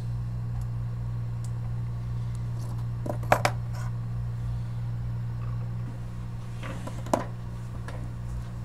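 A steady low electrical hum with a low rumble underneath, broken by two small sharp clicks of tools or parts handled on a workbench, one about three seconds in and another about seven seconds in.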